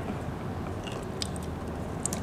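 Faint plastic handling noise with a few small clicks as an Ethernet (RJ45) plug is worked into the port of an outdoor PoE extender's plastic housing.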